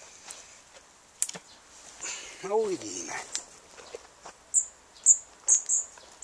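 A bird calling close by: a run of about six short, high chirps in the second half. Scattered sharp clicks and one brief spoken 'A' come earlier.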